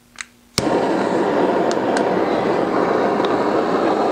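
Butane crème brûlée torch being lit: a faint click, then a sharp igniter click about half a second in as the flame catches, followed by the steady hiss of the burning flame.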